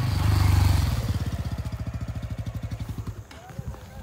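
A Bajaj Pulsar N160 motorcycle's single-cylinder engine running close by, loudest in the first second, then fading as the bike moves away, its rapid beat dying out about three seconds in.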